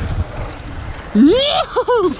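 Wind buffeting the helmet camera's microphone along with tyre noise on a dirt trail during a fast mountain bike descent. About a second in, the rider gives a loud rising whoop, followed by a few short excited yelps.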